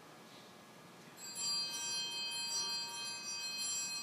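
Altar bells rung at the elevation of the consecrated host. They start about a second in as a cluster of high, steady bell tones that keep ringing and slowly fade.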